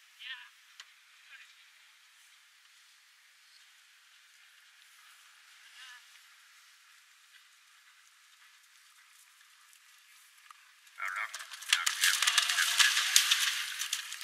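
A horse cantering on turf: faint at first, then about eleven seconds in a loud burst of hoofbeats and clatter as it comes close past the microphone.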